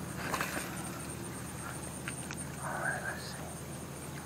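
Quiet shoreline ambience with a steady, high, pulsing insect trill, a brief rustle of handling just after the start and a short soft noise about three seconds in.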